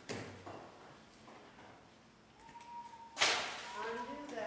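Soft handling knocks from a rope and metal ring being worked during a ring-on-rope magic trick, then a sudden sharp whoosh-like burst a little after three seconds, followed by audience voices starting up.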